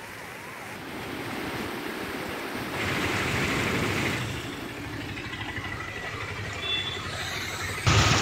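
Field sound of flooding: a steady rushing noise of floodwater mixed with vehicle noise, louder from about three seconds in.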